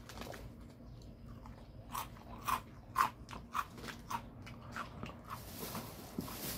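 A person chewing a crunchy snack close to the microphone: a run of about seven crunches, roughly two a second, starting about two seconds in.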